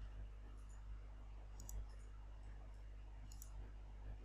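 Two faint computer mouse clicks, about a second and a half apart, over a low steady hum.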